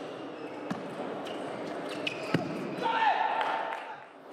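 A few sharp clicks of a table tennis ball struck by rackets and bouncing on the table, over a steady crowd murmur, the loudest about two and a half seconds in. Just after, a loud shout lasting about a second, falling in pitch, as the rally ends and the point is won.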